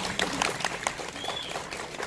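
Audience clapping in scattered, irregular claps, with a brief high cheer from the crowd about a second in.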